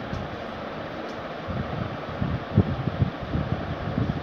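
Steady fan noise with low, irregular rumbling on the microphone, loudest about two and a half seconds in.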